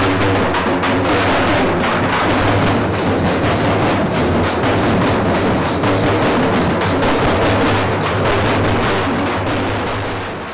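A dhol drum troupe playing a fast, dense beat on large barrel drums. It begins to fade out near the end.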